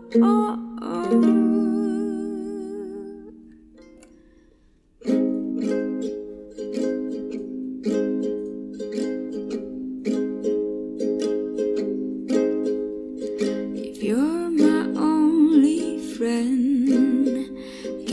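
Ukulele cover song: a sung "oh" held with vibrato fades out, and after a brief pause the ukulele comes back in with steady strummed chords about five seconds in. Short wordless vocal phrases join the strumming near the end.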